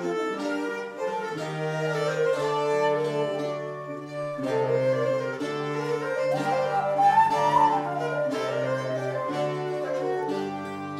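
Renaissance consort playing an instrumental interlude of an English broadside ballad: Renaissance flute over lute, cittern, treble viol and bass viol, with a steady bass line beneath. About seven seconds in, the upper line climbs in a quick rising run to the loudest point of the passage.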